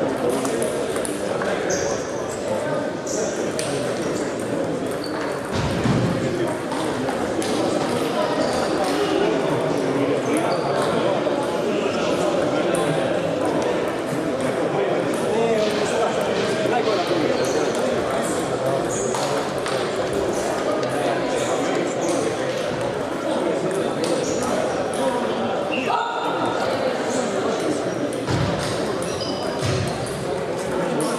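Table tennis balls clicking off bats and tables in rapid, irregular ticks from several games at once, over a steady murmur of voices in the hall.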